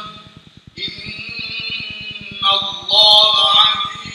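A man's voice chanting Quran recitation in Arabic in long, melodic drawn-out notes. It breaks off briefly just after the start, then comes back in and reaches its loudest, highest phrase about three seconds in.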